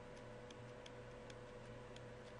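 Faint, unevenly spaced light clicks, about three a second, from a stylus tapping on a pen tablet while writing, over a low steady electrical hum.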